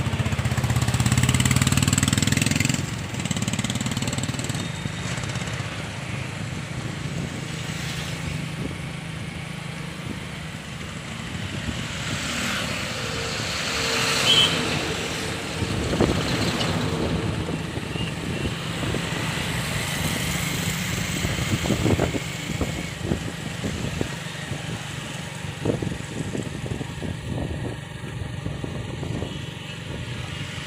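Road noise from riding a motorcycle across a road overbridge: a steady engine and traffic rumble with other motorcycles close by. About halfway through, a heavy tipper truck passes close by.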